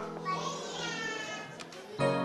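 Studio background music with a long held tone that slowly falls in pitch, and a couple of faint clicks near the end as metal hex nuts are set down on the table.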